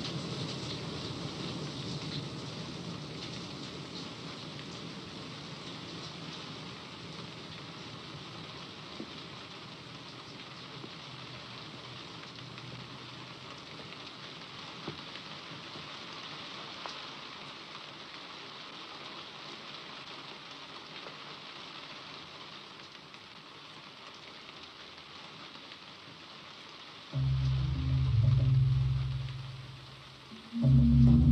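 Steady heavy rain, slowly growing quieter. Near the end a loud, low sustained note of ominous film-score music comes in suddenly and fades after about two seconds.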